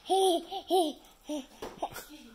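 A baby's voice: a run of about five short, high-pitched vocal sounds, the loudest three in the first second and two fainter ones in the second half.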